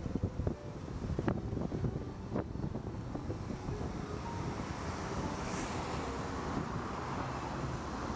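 A steady rushing noise with scattered low crackles and rumbles in the first half, growing smoother and a little fuller toward the end.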